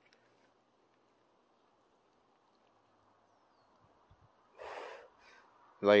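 Near silence for about four seconds, then one short, breathy burst of a man's breath about four and a half seconds in.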